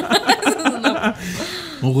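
People laughing and chuckling in short pulses, easing off after about a second, then talk resuming near the end.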